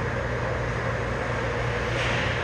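Steady indoor ice rink ambience: a constant low hum under an even hiss of background noise, with no distinct impacts.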